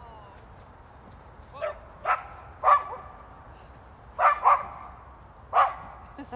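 A dog barking: about six short, sharp barks, coming singly and in one quick pair, spread over a few seconds.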